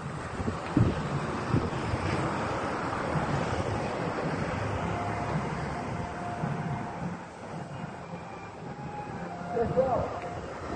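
Distant engine noise that swells and then fades, with wind on the microphone. A couple of low handling knocks on the phone come in the first two seconds.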